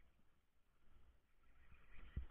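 Near silence: faint low rumble with light hiss.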